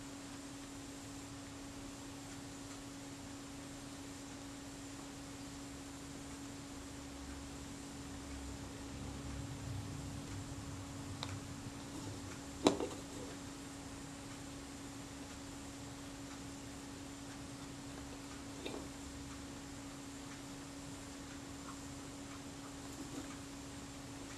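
Quiet room tone with a steady low electrical hum, broken by a few small clicks from handling the camera body, the loudest about thirteen seconds in.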